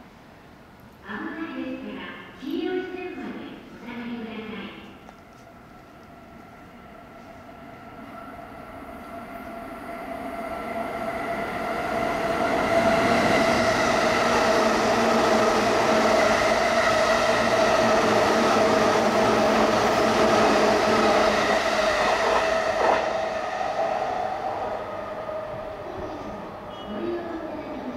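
An E233 series electric commuter train runs through the station at speed without stopping. Its running noise, with a steady whine, builds over several seconds, stays loud for about ten seconds as the cars pass close by, then fades.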